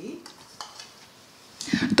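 Small glass prep bowls being handled over a glass mixing bowl, with a few faint clinks and light scrapes of glass.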